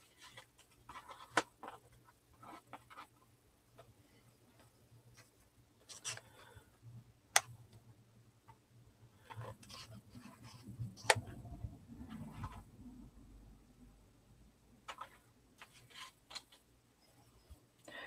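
Quiet handling of paper and cardstock: scattered light taps and clicks with soft rustling as a small paper piece is set and pressed onto an album page, busiest around eleven to fourteen seconds in.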